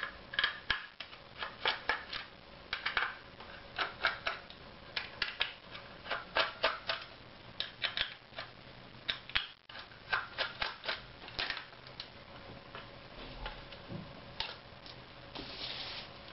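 Small Torx screwdriver backing screws out of a plastic device housing: quick, irregular clicks and ticks, coming in clusters, thinning out near the end.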